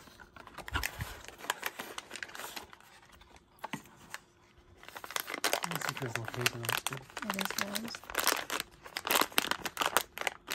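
A paper-and-cardboard blind-box package being torn and crinkled by hand: rustling and tearing in the first few seconds, a quieter pause, then crinkling of the brown paper pouch near the end.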